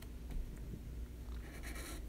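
Felt-tip marker drawing on a paper legal pad: a faint scratchy stroke of the tip across the paper near the end, after a light tap early on.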